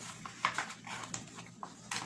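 Paper sticker being peeled off a workbook's sticker sheet by hand: a few short crackles, scrapes and finger ticks on the paper, the loudest about half a second in.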